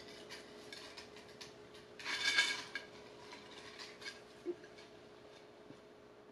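Small objects being handled by hand: a rustle with light clinks about two seconds in, then a few faint taps, over a low steady hum.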